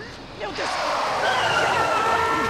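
A yellow taxi's tyres screeching in a hard emergency stop: a long, high squeal starting about half a second in.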